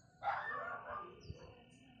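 A single animal call about a quarter of a second in, lasting under a second, followed by a faint thin high steady tone.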